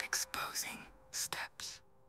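A whispered voice: a handful of short, breathy syllables in the first couple of seconds, then stopping.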